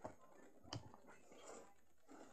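Near silence, with faint knocks of small plastic toy figures being handled on a tabletop: one right at the start and one about three-quarters of a second in.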